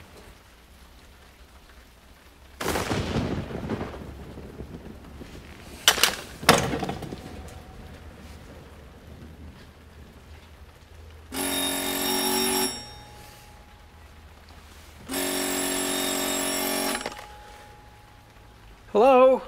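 A telephone rings twice, each ring a steady tone lasting one to two seconds. Before the rings there is a rumble that fades out after about a second and a half, fitting thunder, and then two sharp clicks about six seconds in.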